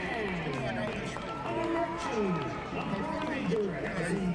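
Many people in a stadium crowd talking at once, overlapping voices with no single speaker standing out.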